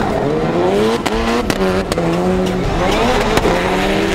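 Several rallycross cars racing together, their turbocharged engines revving up and down with quick gear changes, overlapping engine notes from more than one car, plus some tyre noise.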